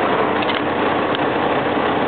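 Diesel engine of a 2005 Kenworth T300 truck idling steadily, heard from inside the cab, with a couple of faint clicks.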